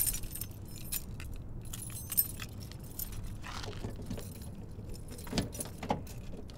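A bunch of keys jangling in hand, with a couple of sharp clicks near the end as a key goes into a van's door lock.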